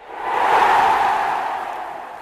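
Whoosh sound effect for an animated logo: a rush of noise that swells over about half a second, then slowly fades away.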